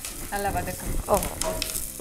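Sliced onion and curry leaves sizzling in hot oil in a stainless steel pot as a spatula stirs them, with a voice talking over it.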